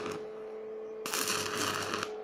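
Electric arc welding with a stick electrode: the arc crackles and hisses, coming in strongly about a second in, over a steady faint hum.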